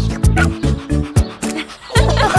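A cartoon puppy barking over children's song music with a steady drum beat.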